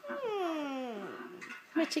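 A young girl's drawn-out thinking "hmmm", one long hum sliding down in pitch over about a second. Another voice starts speaking near the end.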